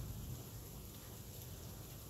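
Faint, steady outdoor background noise with a low rumble during a pause in speech; no distinct event stands out.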